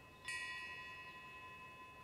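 A faint metal chime struck once about a quarter second in, its several high ringing tones fading slowly.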